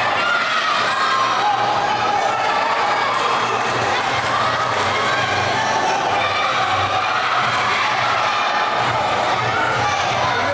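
Crowd of spectators shouting and cheering, many voices overlapping steadily.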